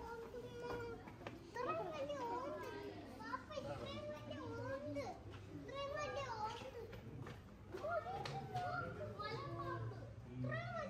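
Children's voices chattering and calling out, high-pitched and continuous.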